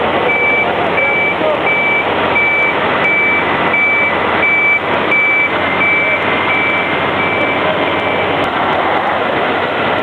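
A fire engine's reversing alarm sounds a steady run of short, single-pitch beeps, a little under two a second, and stops near the end. Underneath runs a loud, steady vehicle-engine noise.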